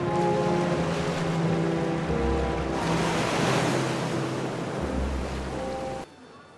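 Sea ambience: waves washing, with a surge of noise swelling in the middle, under soft background music with long held notes.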